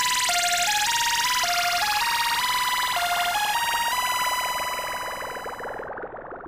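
Closing bars of an electronic track: a lone synthesizer melody stepping back and forth between a few notes over a hissing sweep, with no beat or bass. It fades out near the end.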